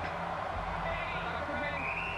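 Football match broadcast audio playing quietly in the background: faint commentator voices over a steady, even background noise.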